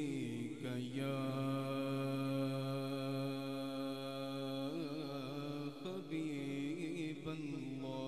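Male voice singing a Punjabi naat, holding a long drawn-out note for several seconds, then breaking into wavering melismatic turns about five seconds in and again near the end.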